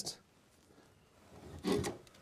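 A brief scraping rub about one and a half seconds in, as the brush strip of a floor cable-channel cover is slid along the channel's side-mounted screws.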